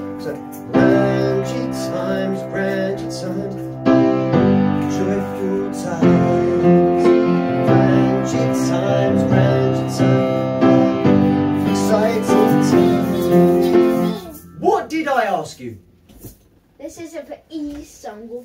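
Upright piano playing a slow progression of held chords, a new chord struck every two to three seconds, as chords are tried out for a song. The playing stops about fourteen seconds in, followed by brief voices and laughter.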